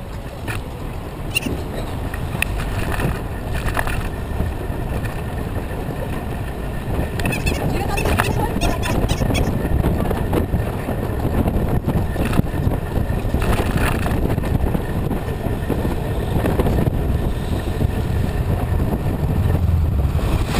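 Wind rumbling on a bike-mounted camera's microphone, mixed with tyre and road noise from a moving bicycle, growing louder as the bike picks up speed. A few short clicks and rattles come through along the way.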